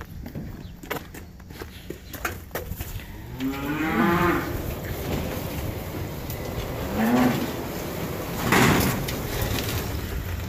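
Black Angus cattle mooing in the barn: one call about three and a half seconds in and a shorter one around seven seconds. Near the end comes a loud, rough burst, the loudest sound here. A few light clicks and knocks come in the first seconds.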